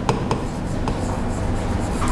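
A pen writing a word on a board: light scratching strokes broken by short ticks as the pen touches down and lifts, over a steady low room hum.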